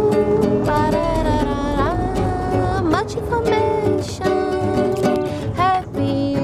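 Acoustic guitar playing a song, with a sustained melody line over it that slides up between notes twice, in a wordless instrumental passage.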